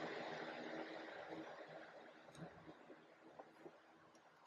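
Faint metallic clicks and taps of steel pry bars working against the stub shaft and its retaining clip in a cast-iron differential housing. The clicks follow a soft steady hiss that fades away over the first two seconds.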